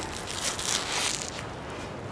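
Clothing rustle and handling noise from hands fumbling at the front of a jacket, soft and irregular.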